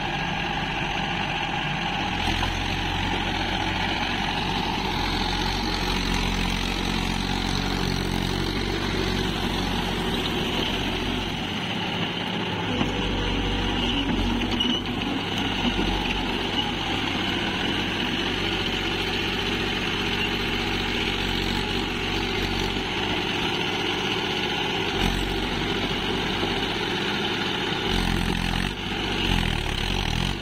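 Mahindra Yuvo 415 DI tractor's four-cylinder diesel engine running steadily under load while it drives a rotavator through a flooded field.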